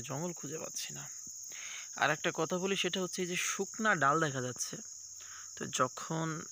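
A steady, high-pitched drone of insects, crickets or cicadas, chirring throughout, with a man's voice talking over it near the start and again from about two seconds in.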